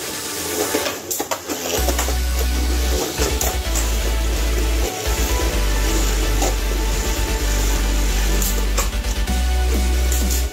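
Two Beyblade spinning tops whirring and scraping around a plastic stadium, with clacks as they strike each other, over background music.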